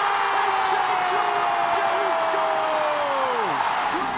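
Stadium crowd cheering a goal, under a commentator's long drawn-out shout held on one pitch that drops away near the end.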